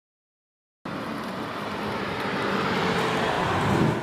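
A V10 convertible sports car driving up the street, a steady engine and road noise that slowly grows louder as it approaches. It starts suddenly after a moment of silence.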